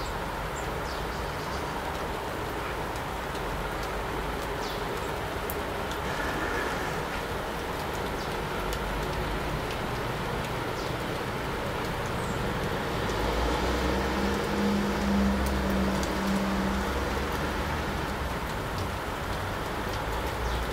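Steady outdoor background noise with a low hum and rumble that swells and fades again between about 13 and 17 seconds in, and a few faint, short high chirps in the first few seconds.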